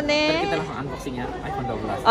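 Speech only: a voice in the first half second, then indistinct talking and background chatter.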